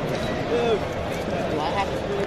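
Hubbub of many people talking at once in a large, crowded hall, with snatches of nearby voices standing out.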